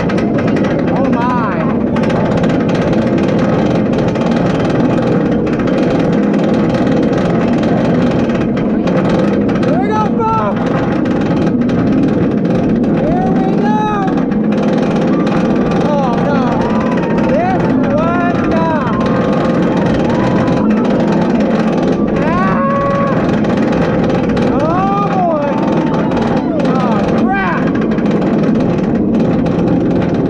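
Inverted roller coaster train climbing its chain lift hill: a steady, loud mechanical rattle and clatter from the lift. Short rising-and-falling vocal calls come and go over it through the middle part.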